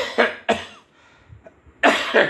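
A man coughing: three quick coughs in a row, a short pause, then another cough near the end.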